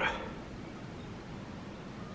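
Faint, steady background noise with no distinct event, in a pause between a man's words; his voice trails off at the very start.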